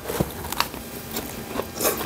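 A person eating a spoonful of bibimbap close to the microphone: quiet mouth clicks and chewing, with a brief louder noise just before the end.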